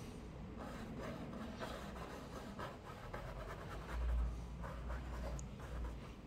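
Faint, soft scratching of a small paintbrush's bristles stroking across a canvas panel as outlines are sketched in paint, with a low bump about four seconds in.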